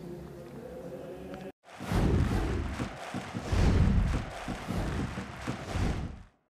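Steady stadium background for about a second and a half, then a sudden cut and a loud electronic outro sting: deep, heavy hits with noisy swooshes that swell in two or three waves and fade near the end.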